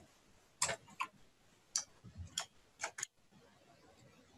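Faint clicking of a computer mouse and keyboard: about seven short, sharp clicks at irregular spacing, two of them in a quick pair near the end.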